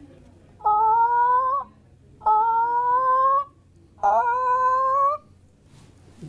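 A woman's imitation of a wild turkey call, blown into her cupped hands: three long hooting notes of about a second each, every one rising slightly in pitch.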